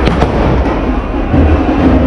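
Fireworks going off overhead: a loud, dense crackle and rumble, with a few sharp cracks near the start.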